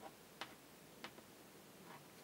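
A few faint, short clicks from fingers handling a small plastic clip and rubber loom bands, against near silence.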